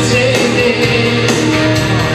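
A man sings an Italian pop love song live into a handheld microphone. The backing music has a steady beat and is amplified through PA speakers in the room.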